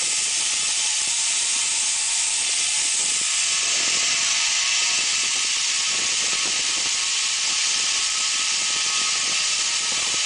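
Zip line trolley pulleys running along the steel cable: a steady high hiss with a faint whine that holds at one level throughout.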